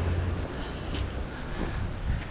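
Wind on the microphone: a steady low rumble with a hiss, in a cold breeze.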